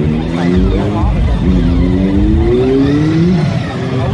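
Honda ST touring motorcycle's V4 engine pulling away under acceleration. Its pitch rises, drops at a gear change about a second in, then climbs again through the next gear before easing off near the end.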